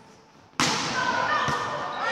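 A volleyball struck hard about half a second in, a sharp smack that rings on in the gym's echo. A lighter hit follows about a second later.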